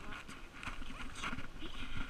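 Scuffling as a goat kid is grabbed and lifted: small hooves knocking and scrabbling, with plastic sleeves rustling, loudest near the end.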